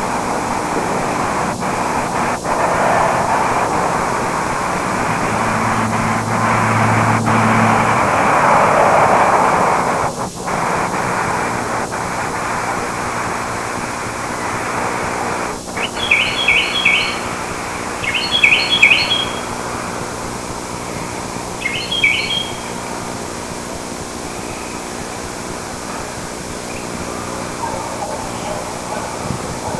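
A small bird chirping in three quick bursts of high notes, about two-thirds of the way through, over a steady outdoor hiss. About six seconds in, a low hum lasts for two seconds.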